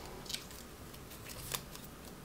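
A small folded paper slip being unfolded by hand: faint crinkles, with a sharper crackle about a second and a half in.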